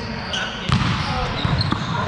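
Indoor volleyball play in a large echoing gym: a sharp smack of a hand on the ball about two-thirds of a second in, and a few brief squeaks and footfalls on the court, over players' voices in the background.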